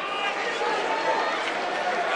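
Football crowd in the stands: many spectators' voices talking and calling out at once, close around the microphone, with no single clear speaker.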